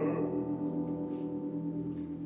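A sung operatic note dies away at the very start. Then a low orchestral chord is held, ringing like a bell and slowly fading.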